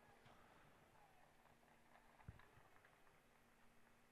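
Near silence: a faint steady hum and hiss, with one faint tick a little past halfway.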